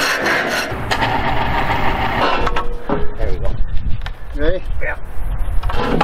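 Long-handled flat scraper rasping across a steel plate, stopping about a second in. After it come a few knocks and brief vocal sounds.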